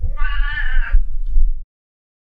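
A house cat meowing once, one drawn-out meow about a second long, with a low rumble underneath. The sound cuts off abruptly about a second and a half in.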